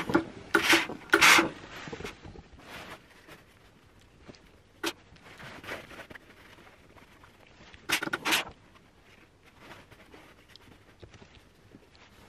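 Silk fabric rustling as it is handled and pressed with an iron over a tailor's ham: a few short rustling bursts about a second in and again near eight seconds, with a single click near five seconds.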